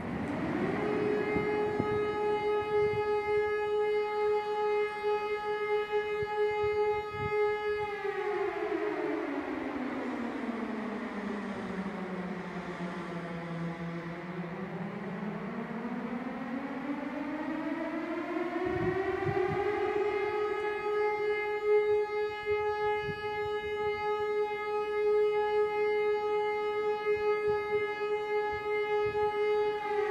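Synthesized civil defense siren made in NI Massive from a saw wave and a triangle wave under pitch automation. It climbs quickly to a steady high wail, slides slowly down to a low moan about halfway through, then rises again and holds high.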